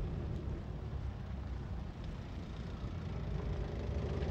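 A police car and a four-wheel-drive following it driving slowly past on a dirt track: a steady engine rumble mixed with tyre noise on the loose ground.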